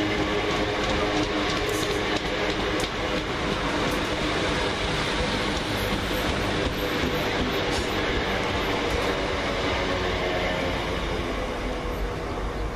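Two coupled Class 321 electric multiple units pulling away along the platform. The motors hum with several steady tones over the running noise, and a few sharp clicks come from the wheels over rail joints. The sound eases slightly near the end as the train draws away.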